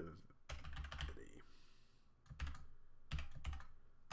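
Computer keyboard typing: scattered keystrokes in small clusters, with a sparser gap of about a second near the middle.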